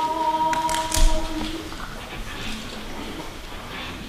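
Mixed choir singing a cappella, holding a final sustained chord that is released about a second and a half in, followed by the quiet of the hall. A brief sharp thump sounds about a second in.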